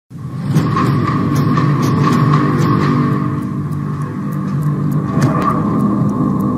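Cinematic logo-intro music starting suddenly: a dense low rumble under a steady high tone, with evenly spaced sharp ticks.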